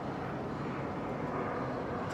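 Steady background engine rumble in a city street, holding even with no breaks.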